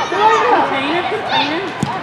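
Overlapping high-pitched shouts and calls from spectators and players at an indoor soccer game, with a single sharp thud near the end.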